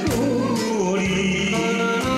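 A man singing a Korean popular song into a karaoke microphone over a backing track, his voice falling in pitch in the first second, with held accompaniment notes and a steady beat.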